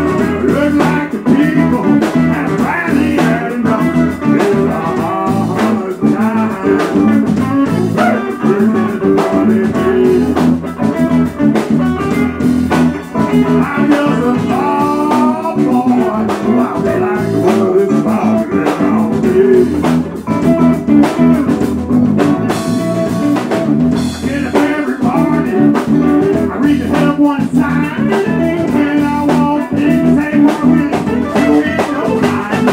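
Live electric blues band playing an instrumental passage: semi-hollow-body electric guitar over drums, with a harmonica played into a hand-cupped vocal microphone, its bent notes gliding up and down in the middle of the passage.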